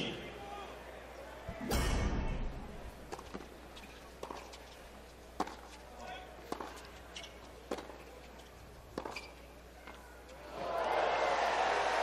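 Tennis ball struck by rackets and bouncing on a hard court during a rally: short sharp knocks, irregularly spaced about half a second to a second apart. Crowd noise swells up in the last second and a half as the point ends.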